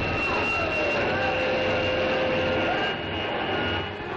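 Sound effects on an early-1950s television soundtrack: a steady rushing hum with a constant high whine, and pitched tones that slide down and then hold, like electrical laboratory machinery.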